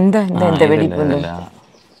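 A person's voice, loud and close, for about a second and a half, then fading.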